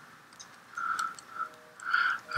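A few faint, light clicks from a MacBook's keyboard and trackpad while files are browsed, with a couple of short, soft sounds between them.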